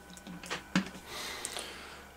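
A single sharp click about three quarters of a second in as the 12-volt supply lead is connected to the inverter circuit, followed by a faint steady hiss.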